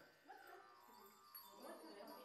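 Faint, soft chanting voice from a healing ritual, pitched and wavering in short phrases, with light metallic jingling.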